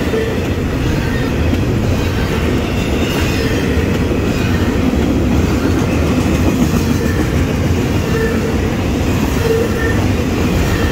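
Double-stack intermodal container cars of a CSX freight train rolling steadily past: a continuous loud rumble of steel wheels on the rails, with clickety-clack over the rail joints.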